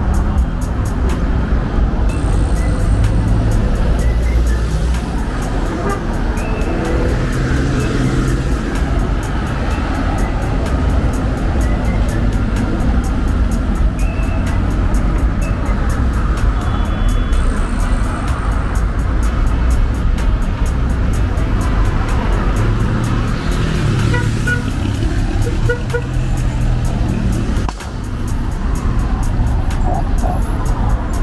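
Busy road traffic, cars passing close by in a steady run, with music playing underneath.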